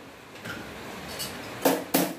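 Kitchenware clattering at a stove: two sharp knocks in quick succession near the end, over a quiet small-room background.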